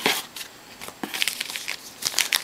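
Foil wrapper of a trading-card pack crinkling in the hands, in short spells near the start and again from about a second in.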